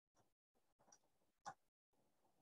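A few faint computer keyboard keystrokes against near silence. The loudest comes about one and a half seconds in.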